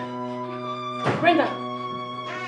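Background film score of held, steady string tones. About a second in, a short, loud voice cry rises over the music.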